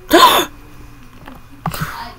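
A short, loud hiccup-like yelp that rises in pitch, just after the start, from a startled cartoon character. A second, rougher burst follows near the end.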